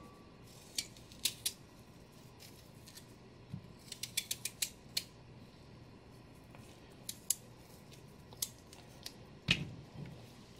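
Knife cutting through a raw peeled sweet potato held in the hand: a series of crisp, short snapping cuts, some single and several in a quick run in the middle, with one heavier knock near the end.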